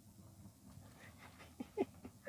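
Low steady hum inside a slowly moving car, with two short, sharp vocal sounds close together near the end.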